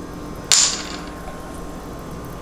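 A single short, sharp sound about half a second in, trailing off in a brief high hiss, from a freshly opened plastic bottle of tonic water and its cap being handled.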